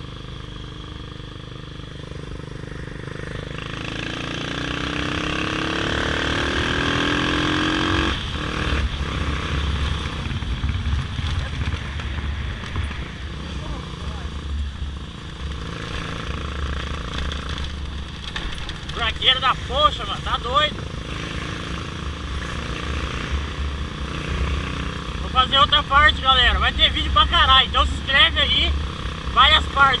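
Motorcycle engine running underway with wind rumble on the microphone; about four seconds in its pitch rises steadily as the bike accelerates. Voices come through in short spells in the second half.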